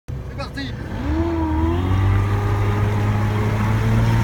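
Outboard motor running steadily, with a low hum that picks up about a second in. A person's drawn-out wavering exclamation rises over it briefly.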